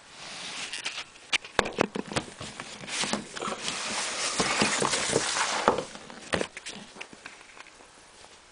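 Handling noise from a cardboard jersey presentation box on a wooden floor: several sharp knocks and clicks, then a few seconds of dense rustling and scraping in the middle, then a few more knocks.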